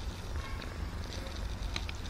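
Tabby kitten purring close to the microphone: a steady low rumble, with a faint click near the end.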